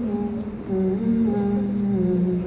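A voice humming a slow melody in long held notes, stepping down and back up in pitch.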